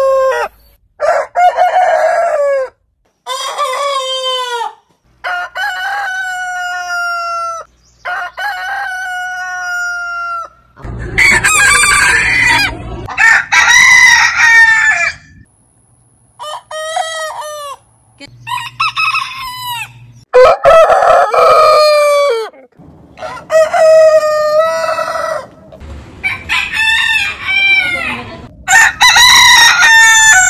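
Roosters of different heritage breeds crowing one after another, about a dozen crows, each lasting one to two and a half seconds and ending abruptly at a cut to the next bird. The crows differ in pitch and length from bird to bird.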